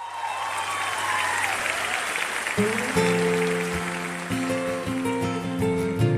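Start of a live concert track: the audience cheers, then acoustic guitar strumming begins about two and a half seconds in and carries on as the song's intro.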